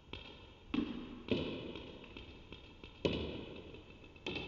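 A table tennis ball being served and struck: a quick, uneven run of sharp clicks as it hits the rubber of the bats and bounces on the table, each with a short echo. The loudest hits come about a second and three seconds in.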